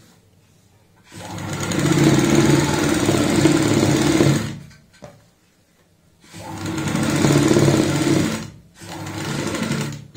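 Straight-stitch sewing machine running in three bursts as a presser-foot-width seam is sewn along a pocket edge. The first run lasts about three seconds and the second about two, and a shorter, quieter run comes near the end.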